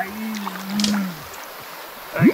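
A person's voice holding one low, wordless hum for about a second before it fades out, with a few faint clicks.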